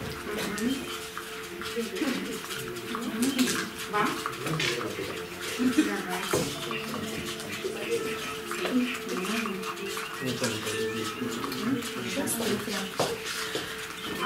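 Low talk among several people in a small room, with frequent small clicks and scrapes of spoons stirring a wet seed-and-gelatin mixture in plastic bowls.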